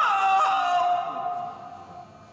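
A man singing solo, closing a phrase with a quick wavering ornament that settles into a long held note, which fades away about a second and a half in.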